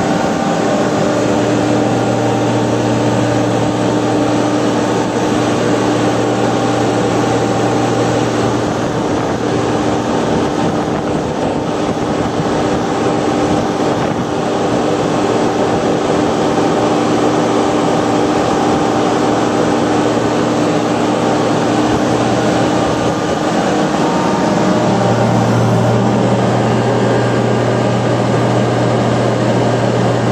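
Portable car crusher's engine running revved up, driving the hydraulic pump while the control handles are worked to raise the cylinders. The low drone drops back about 9 seconds in and comes up strongly again about 24 seconds in as the hydraulic load changes.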